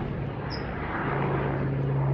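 Aircraft engine, heard as a steady low hum over a wash of noise that grows slightly louder toward the end.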